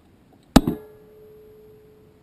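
A sharp metallic bang, with a smaller second bang just after, then a clear ringing tone that fades over about a second and a half, picked up by a camera mounted on the rocket's body. It is the electronic-sounding 'zing' that the uploader links to the booster separating.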